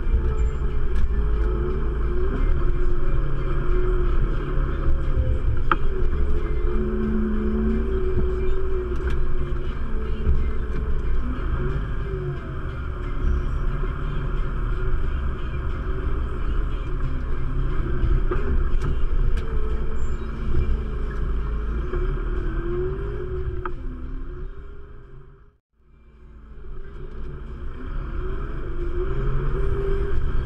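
Diesel engine of a Valtra N101 tractor running steadily under load while plowing snow, heard from inside the cab as a low rumble with wavering pitch. About 25 seconds in the sound dips away to near silence and then comes back.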